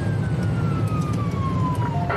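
Police siren wailing, its pitch falling slowly and steadily, over the steady low rumble of engine and road noise inside a moving patrol car.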